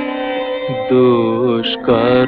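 A Bengali devotional song to Kali with instrumental accompaniment. A held instrumental note gives way, about a second in, to a sung melodic line with vibrato.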